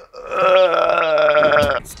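A person's drawn-out, wavering vocal noise rather than words, lasting about a second and a half.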